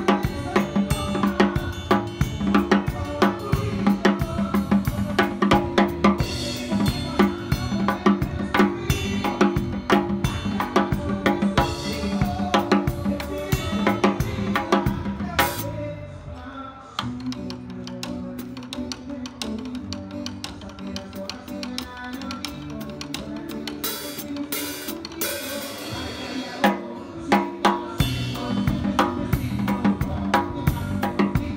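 Live band music led by a drum kit played hard, with bass drum, snare and cymbal strokes over bass guitar. About halfway through the drums thin out to a few light hits under held bass notes, and the full kit comes back in near the end.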